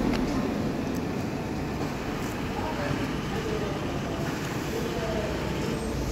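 Indistinct voices talking in the background over a steady rumble of outdoor noise.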